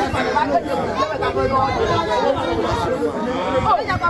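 A group of people talking over one another at once, several voices overlapping in a steady babble of chatter.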